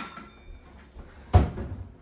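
A light clink at the start, then about a second and a half in a single loud thunk of a wooden kitchen cupboard door being shut after a measuring cup is taken out.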